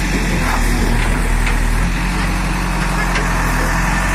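Diesel engine of a JCB backhoe loader running at a steady speed, with a few faint knocks over the engine sound.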